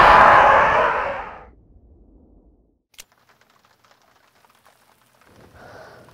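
The tail of a loud boom sound effect dying away over the first second and a half as the picture cuts to black. Then near silence, broken by one sharp click about three seconds in, and a faint low rumble near the end.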